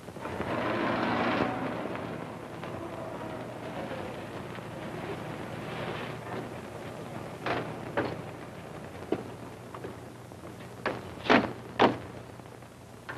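A 1930s–40s sedan pulling up, its noise loudest in the first second and a half and then dying down. Car doors then clatter open, with two loud slams near the end.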